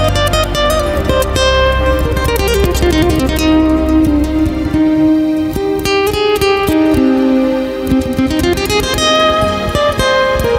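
Nylon-string acoustic guitar fingerpicked, playing a melody of plucked notes over sustained accompaniment, with a steady low bass tone underneath for the first half.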